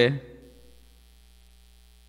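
A man's spoken word ends at the start and fades with a short room echo, followed by a pause holding only a faint, steady electrical hum.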